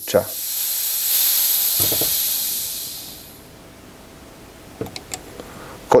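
Compressed air hissing out of a Fox mountain-bike fork's air spring through its Schrader valve, held open with a valve-core tool. The hiss is high-pitched and fades away within about three seconds as the air spring empties, and a few faint clicks follow.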